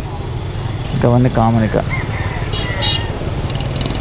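Motorbike engine idling with a steady low rumble, with a few words of a voice about a second in.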